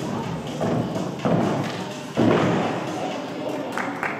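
Thuds of a gymnast's hands and feet landing on a sprung gymnastics floor during tumbling. There are three heavier impacts, the loudest a little over two seconds in.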